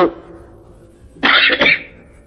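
A cough: one short, rough burst in two quick parts, a little over a second in.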